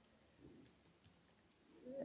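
Near silence with a few faint, short clicks, about half a second to a second and a half in.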